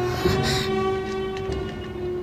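Sustained, tense chord of dramatic background score, many held tones together, with a brief rustle near the start.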